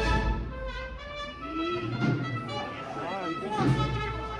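Brass band playing a processional march, with voices talking over it partway through.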